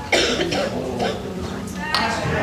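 A single loud cough near the start, close to the microphone, with faint talking going on behind it.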